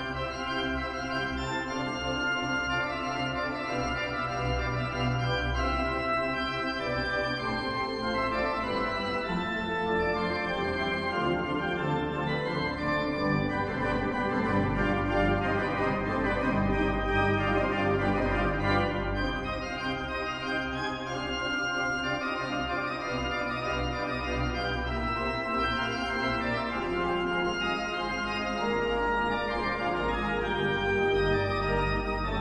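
Organ music: a 30-rank Wicks/Hunt pipe organ with a Hauptwerk virtual organ playing sustained chords over deep bass notes, at a steady level.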